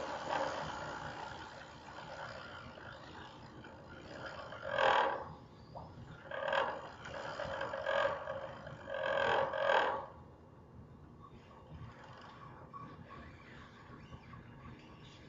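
Several short, muffled, indistinct vocal sounds, like a voice speaking or calling, between about 5 and 10 seconds in, over a low steady hiss.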